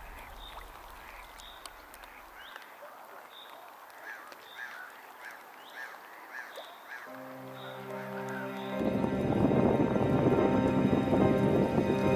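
Quiet open-air ambience with faint short high chirps. About seven seconds in, background music comes in, and it plays at full level for the last three seconds.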